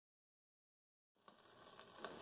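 Silence, then about a second in the faint hiss of a shellac 78 rpm record's surface noise begins and slowly swells. It comes from a 1926 Victor Orthophonic Credenza's soft-tone needle running in the record's lead-in groove, just before the music starts.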